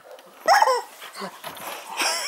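A dog gives one short, loud whining yelp about half a second in, then makes softer whimpering sounds.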